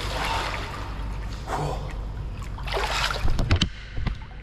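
Water splashing and sloshing as a swimmer strokes through a pool, in surges with each stroke, with a few sharp knocks near the end.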